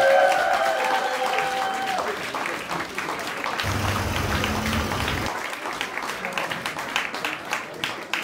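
A crowd applauding, many hands clapping at once. Over the first two seconds the held last notes of a song fade out, and about four seconds in there is a short low rumble.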